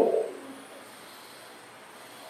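The end of a man's spoken phrase fading out in the first half-second, then quiet room tone.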